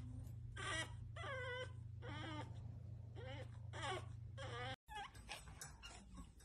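Pug puppy whining and whimpering in a series of about six short, high, wavering cries over a steady low hum. The sound cuts off abruptly near the end.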